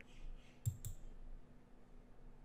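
Two quick computer mouse clicks, about a fifth of a second apart, a little over half a second in, over a faint steady room hum.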